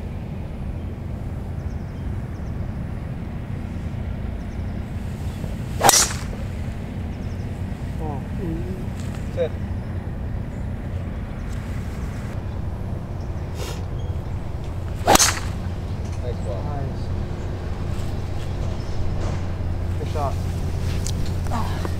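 Two golf tee shots, each a single sharp crack of clubhead on ball: a driver strike about six seconds in, then a second drive about nine seconds later, over a steady low background rumble.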